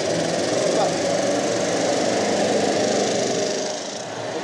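Backpack leaf blower's engine run at high throttle: a loud, steady rush of engine and blown air that drops off near the end.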